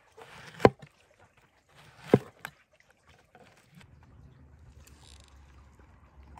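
A large knife slicing through firm fresh porcini mushrooms and striking a wooden cutting board. There are two cuts, about a second and a half apart, each a short rasp through the mushroom ending in a sharp knock on the board. A faint low steady rumble follows in the second half.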